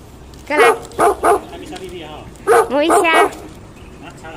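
A dog barking: three quick barks about half a second to a second and a half in, then a further run of barks about two and a half seconds in.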